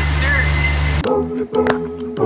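Steady low engine hum of a miniature train ride under voices and laughter, cut off abruptly about a second in by a cappella singing.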